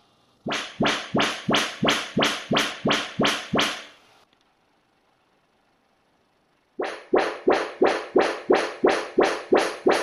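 Audyssey MultEQ speaker-detection test signal from a Denon AVR-591 receiver played through its loudspeakers: a run of about a dozen sharp pulses at about three a second, a pause of some two and a half seconds, then a second run on the next speaker. The receiver is checking each speaker's connection and measuring the main listening position.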